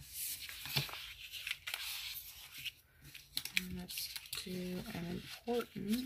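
Paper rustling and crinkling with small sharp clicks as planner pages and a sticker sheet are handled and slid across a table. In the second half a woman's voice makes a few short wordless hums.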